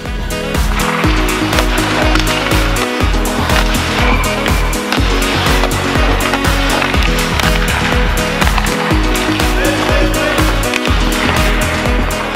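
Background music with a steady beat, loud throughout.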